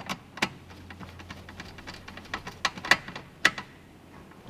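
Small screwdriver tightening the clamp screw of a PCB screw terminal block on a wire, heard as a string of light, irregular clicks and ticks.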